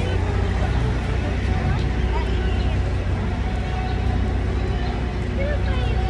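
City street noise: a steady low rumble of traffic with voices of passers-by.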